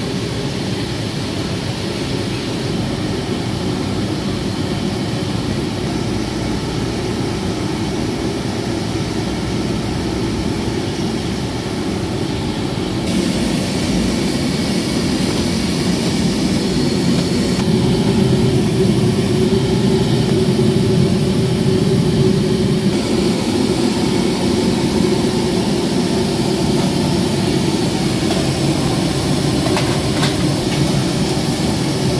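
Steady low roar of commercial kitchen equipment, such as gas burners under steamers and exhaust fans. It shifts abruptly in level and tone a few times.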